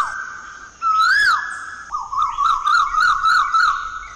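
Bird song on a cartoon soundtrack, in the manner of an Asian koel: a clear whistled note rising and falling about a second in, then a quick run of about eight short rising whistles.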